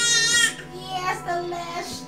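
A baby's long, high-pitched squeal that wavers slightly and stops about half a second in, followed by quieter, shorter pitched sounds.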